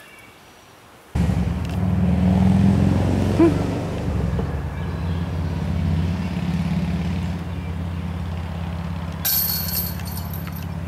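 An engine running steadily at an even pitch, starting abruptly about a second in. A brief bright rattle sounds near the end.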